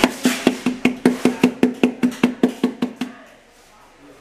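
Ceramic lamp base rocking on a tilted board after being pushed, knocking against it about five times a second with a short ringing note each time, and dying away after about three seconds as the lamp settles.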